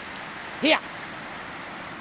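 Steady rush of creek water running over rocks, with a man's single spoken call of "here" a little under a second in.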